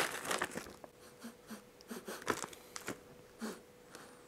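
A plastic cookie bag crinkling faintly as it is handled, in short, irregular crackles and rustles.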